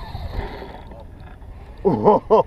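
Low outdoor rumble with faint handling knocks, then a man starts laughing near the end.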